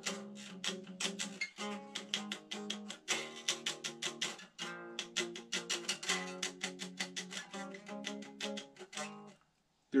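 Eight-string electric guitar playing a repeating rock chord progression, a cadence, each chord picked in quick repeated strokes and changing about every one and a half seconds. The playing stops shortly before the end.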